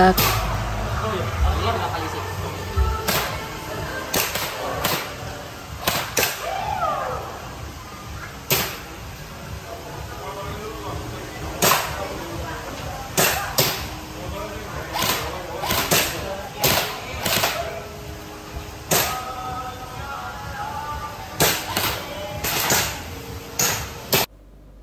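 Airsoft rifle fired in single shots at an indoor range: about two dozen sharp reports, irregularly spaced from half a second to a few seconds apart.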